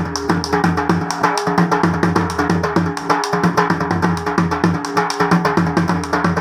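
Dhol, a large double-headed barrel drum, beaten with sticks in a fast, even rhythm, over steady held tones from a melodic accompaniment.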